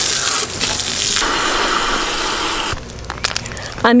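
Garden hose spray nozzle jetting water onto a mountain bike, rinsing it down before the drivetrain is degreased. The spray cuts off a little under three seconds in.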